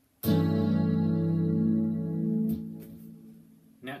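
Electric guitar (a headless Skervesen played through a Fractal Axe-FX) strikes a single A7 chord about a quarter second in and lets it ring, fading away over about three seconds. In this voicing the note from the high E string has been moved to the low E string, which takes away the bluesy sound of the chord and gives it an ambiguous quality.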